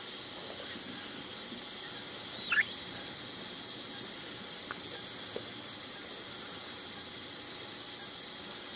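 Steady faint hiss with one short squeak, falling in pitch, about two and a half seconds in.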